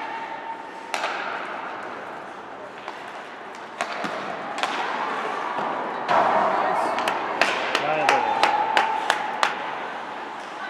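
Ice hockey play in a rink: sharp clacks of sticks and puck over the steady scrape of skates on ice, with a quick run of about half a dozen clacks near the end. Spectators' voices call out at the start and again in the second half.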